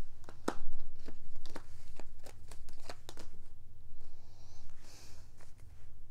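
Tarot cards being shuffled and handled by hand: a run of short, irregular card snaps and clicks.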